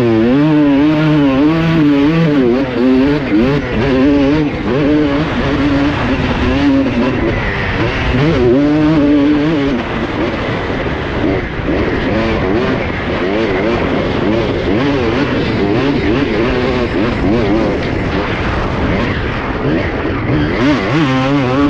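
Honda CR250R two-stroke single-cylinder motocross engine revving up and down under load in sand, its pitch rising and falling quickly over and over, with a noisy rush of wind behind it.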